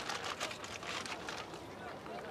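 Oranges being handled and loaded for weighing on a hanging balance scale, heard as a quick run of small knocks and rustles that thins out after about a second and a half. Faint market chatter runs underneath.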